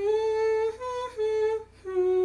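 A woman's voice sings four held notes of a fiddle melody without words: a note, one a step higher, back to the first, then a lower note. She is matching the pitches of the tune by ear.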